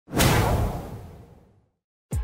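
An intro sound effect: a single sudden whoosh-and-boom hit with a deep low end, dying away over about a second and a half.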